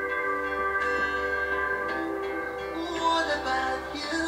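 Background music with held, ringing notes and a slowly changing melody.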